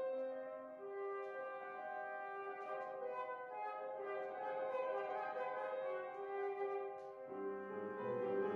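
Concert flute playing a slow melody of long held notes over quiet piano accompaniment. About seven seconds in, the piano comes in fuller with lower chords.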